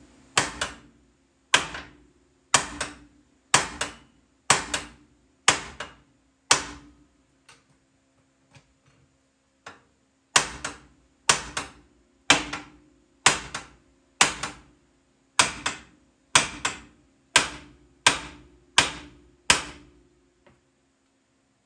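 Hammer blows on the steel control arm of a Ford F-150, about one a second with a short metallic ring after each, easing to a few light taps for a few seconds partway through. The blows jar the arm while a floor jack presses a new ball joint in, so the vibration helps the jack seat the joint.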